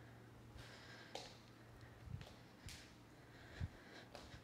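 Near silence over a low steady hum, broken by a few faint breaths and soft thuds of bare feet stepping on an exercise mat during curtsy lunges and squats; the loudest thud comes near the end.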